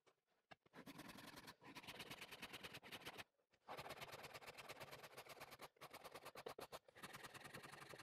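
Faint, rapid scraping of a hand tool carving facets into the back of a flamed sycamore bass neck: two long runs of strokes, the first about two and a half seconds, the second about four, with a short break between.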